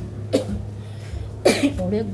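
A person coughs twice, once about a third of a second in and again, louder, about a second and a half in, over a steady low hum.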